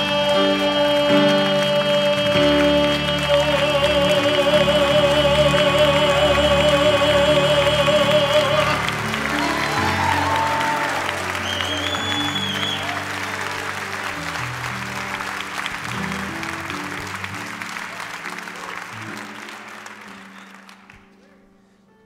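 A male singer holds the final long note of a hymn over a sustained band chord, steady at first and then with vibrato, until it ends about nine seconds in. Applause follows over the lingering chord and fades out at the end.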